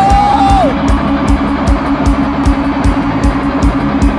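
Thai rock band playing live: a held sung note falls away in the first second, then electric guitars hold a chord over a steady kick drum and cymbals.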